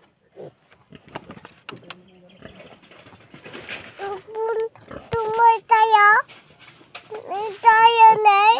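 A piglet squealing in a plastic crate: a run of high, wavering squeals from about four seconds in, growing louder. Before them come rustles and knocks of the crate being handled.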